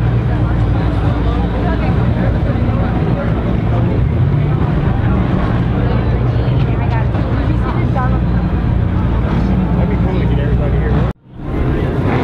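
A car engine idling steadily with a deep, even hum, under crowd chatter. The sound cuts out abruptly for a moment near the end and then comes back.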